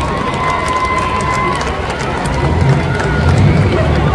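Demolition derby cars' engines running, the low rumble growing in the second half, under the shouting of a large crowd of spectators. A long steady tone sounds for the first second and a half.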